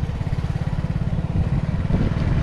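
Motorcycle engine running at a low, steady speed with rapid, even exhaust pulses, heard up close from the pillion seat.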